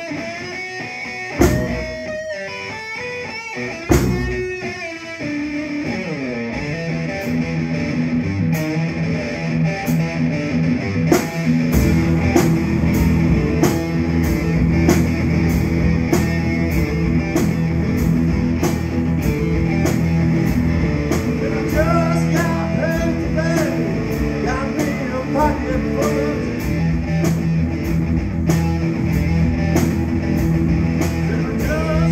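Live blues-rock instrumental break on two electric guitars, with a bass drum and hi-hat worked by the seated guitarist. It starts with sparse accented hits, and about twelve seconds in a steady beat kicks in under sustained, bending guitar lines.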